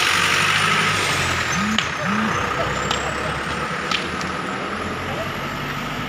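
A vehicle engine idling steadily under a loud hiss of street noise, with a few brief voices and several faint sharp clicks.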